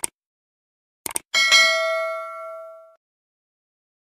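Sound-effect clicks of a subscribe-button animation: one click, then a quick double click, followed at once by a bright notification-bell ding that rings and fades out over about a second and a half.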